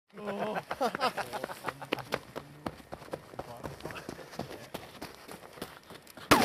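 Muffled voices talking in the first half, with irregular sharp clicks and crackles throughout.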